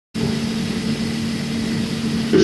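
Steady hum and hiss of an old amateur tape recording, starting abruptly a moment in, with no speech yet.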